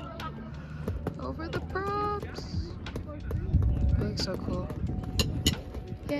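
Indistinct voices of people talking nearby, one voice calling out briefly about two seconds in, over a low rumble on the microphone and a few sharp clicks.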